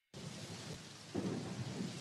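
Rain-and-thunder ambience: steady rain hiss that comes in suddenly just after the start, with low thunder rumbles swelling about a second in.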